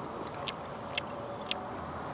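Chopsticks clicking lightly against a bowl, three short clicks about half a second apart, over a steady outdoor background hum.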